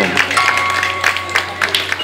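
Small audience clapping in scattered claps, with some voices and a steady low hum underneath.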